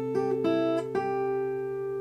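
Steel-string acoustic guitar, capoed at the fifth fret, fingerpicked. A thumb-and-ring-finger pluck of the low and high E strings rings on while the B string is picked three times in the first second: once fretted, once open after a ring-finger pull-off, and once fretted again. All the notes are let ring together.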